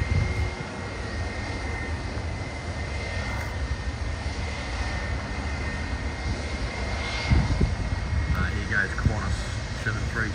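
Airliner jet engines at taxi power: a steady low rumble with a thin, high whine held on one pitch, swelling briefly about seven seconds in.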